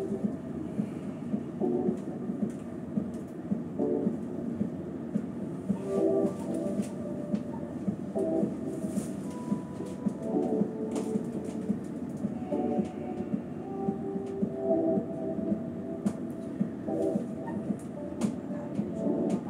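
High-speed passenger lift climbing its shaft: a steady low rumble, like riding in a train carriage.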